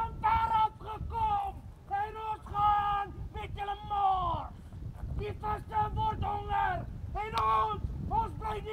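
Voices singing a chant-like song of short held notes that fall away at their ends, with a steady low rumble of wind on the microphone.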